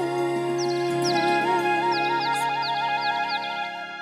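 Bamboo flute playing a fast warbling trill over held orchestral chords, with a run of quick high chirps like birdsong above it.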